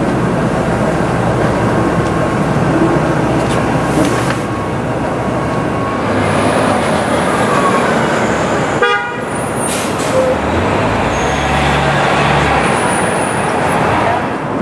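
Busy city street traffic, with cars and a city bus passing. A short vehicle horn toot sounds just before nine seconds in.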